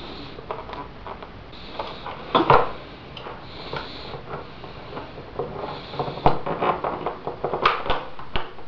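Scattered clicks and knocks as a fiberglass model fuselage is worked loose and pulled out of its fiberglass mold by hand, with brief rubbing in between. The loudest knocks come in a cluster about two and a half seconds in.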